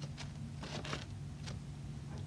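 Quiet room with a steady low hum and a few faint, short clicks and rustles, like a paper sheet being handled.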